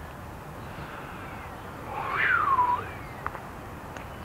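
An animal call: one cry about two seconds in that rises sharply in pitch and then falls away, over a steady background noise.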